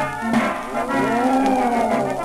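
Military brass band playing from a 1909 acoustic 78 rpm shellac record, with a long sliding note that rises and then falls over about a second and a half, a comic effect laid over the held band chords.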